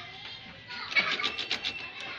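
A doorknob and its tubular latch being worked by hand: a quick run of sharp clicks and rattles about halfway through, over faint background music.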